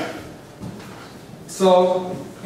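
A man's voice in a lecture room: a short voiced sound right at the start, a quieter pause, then a held syllable from about one and a half seconds in.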